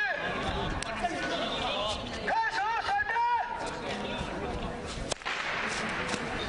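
A long ceremonial whip cracked against the stone pavement, with sharp cracks about a second in and again, louder, about five seconds in. These are the Qing court's ritual whip cracks (mingbian), sounded to call the assembly to silence. A drawn-out calling voice comes between the cracks.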